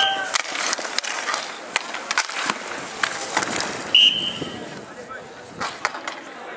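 Inline hockey play: skate wheels rolling on the rink surface, with sticks clacking and knocking. A short, sharp referee's whistle blast comes about four seconds in.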